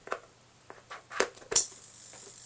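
A few light clicks and knocks of clip leads and wires being handled, then one sharp click about three-quarters of the way in, after which a faint steady buzz sets in: the x-ray transformer switched on without its ballasts.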